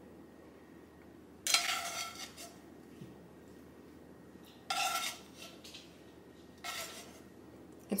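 A plastic spatula scraping and knocking against a copper-coloured nonstick frying pan as mushrooms are scooped out, three times, each with a brief ring of the pan.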